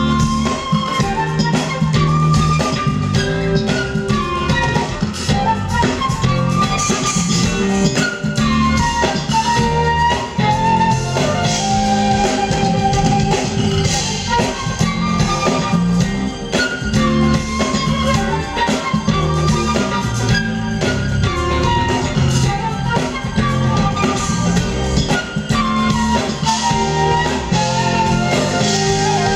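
Live smooth jazz band: an amplified flute carries the melody in flowing phrases that rise and fall, over keyboards, a bass line and a drum kit.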